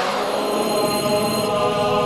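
Opening theme music: a sustained, wordless choir-like chant on a held chord.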